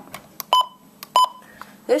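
Two short electronic key-press beeps from a Midland WR120 weather alert radio as its front buttons are pressed, about two-thirds of a second apart.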